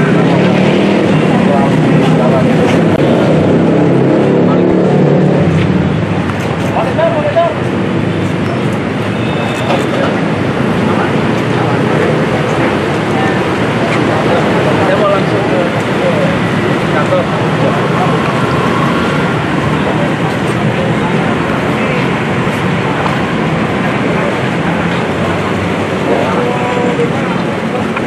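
Indistinct chatter from a group of people outdoors over steady, loud traffic noise.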